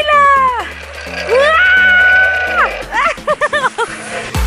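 A woman's high-pitched voice: a falling cry, then one long held squeal, then a quick run of laughter. Background music with a steady beat plays underneath.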